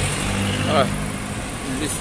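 A minibus driving past close by, its engine giving a steady low hum that fades about a second in as it moves away.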